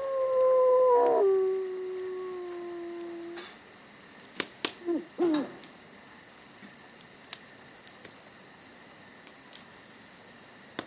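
A canine howl: one long call that drops in pitch about a second in and fades out by three and a half seconds. It is followed by scattered sharp clicks and two short, sliding calls, over a faint steady high chirring of crickets.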